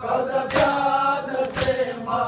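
Men chanting a Pashto noha, the held sung lines carried by many voices, while the crowd strikes their chests together in sina zani: two sharp, hall-wide slaps about a second apart, keeping the beat of the lament.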